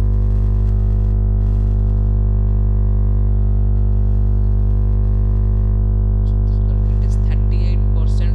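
Loud, steady electrical mains hum: a low buzz with a stack of even overtones that never changes, the fault behind the recording's bad audio quality.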